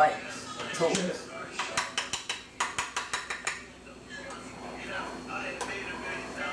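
Metal spoon clinking and scraping against a nonstick frying pan while eggs are cooked, in a quick run of strokes about five a second through the middle, then quieter.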